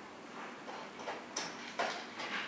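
Boxer's claws clicking on a hardwood floor as it steps about, several sharp clicks that come louder in the second half.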